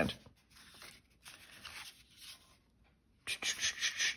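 Paper and card stock being handled and refolded by hand: faint rustles and slides, then a louder rustle near the end.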